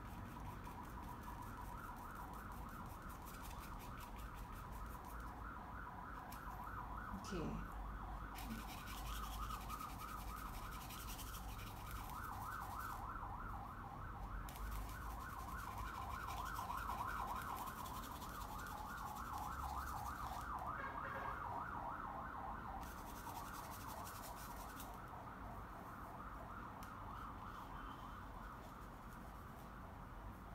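Faint rubbing of a paintbrush over a painting, coming and going in stretches, under a quiet, rapid, steady pulsing tone in the background.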